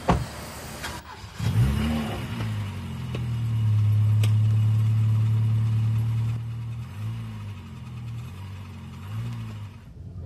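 A car door shuts with a sharp thud. About a second and a half later a car engine starts and revs up, then runs loudly and steadily, its pitch dipping and rising twice as the car drives off.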